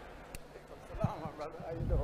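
Faint voices off the microphone in a large gathering, with a couple of sharp clicks and low thumps near the end as a microphone at the pulpit is handled.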